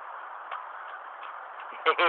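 Steady outdoor beach noise, with a few faint light taps scattered through it. A young child's high voice starts near the end.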